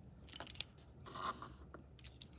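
Faint plastic handling sounds from a lancet and lancing device being handled: a few small clicks and a short scraping rub about a second in.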